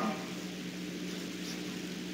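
A pause between spoken phrases, holding only room tone: a steady low hum with faint hiss.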